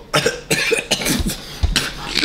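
A man coughing hard in a run of short, sharp bursts, his throat burning from a super-hot scorpion-pepper tortilla chip.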